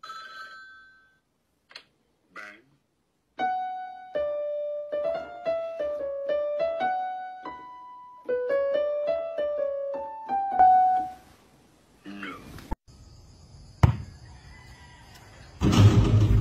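Electronic keyboard playing a quick melody of single notes, lasting about seven seconds and starting a few seconds in.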